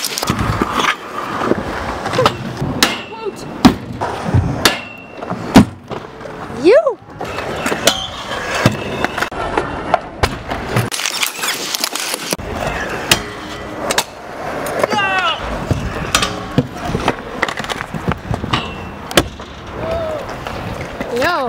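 Stunt scooter wheels rolling on concrete, with repeated sharp clacks and knocks as the scooters land and grind on metal rails and ramps. Several of the clacks are loud.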